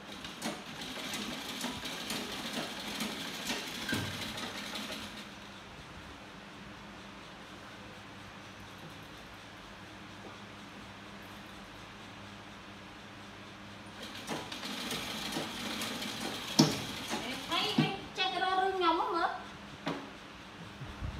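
Sewing machine stitching in two runs of rapid, fine ticking: the first lasts about five seconds, and the second starts about two-thirds of the way through. A steady low hum fills the gap between them. Near the end there is a sharp click, then a voice.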